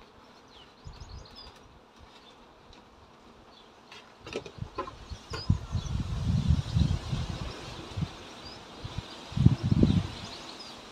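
Honeybees buzzing around an open hive. From about four seconds in, and again near the end, bursts of low rumbling and a few clicks from handling near the microphone are louder than the bees.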